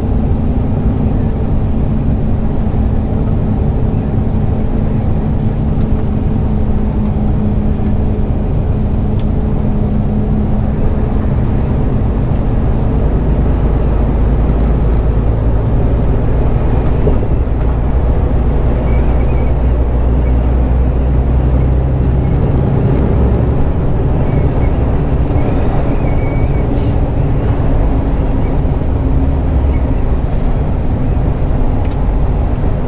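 Steady drone of a Mercedes-Benz Actros SLT heavy-haul truck cruising under load, heard from inside the cab: diesel engine and road noise. The engine note shifts about halfway through.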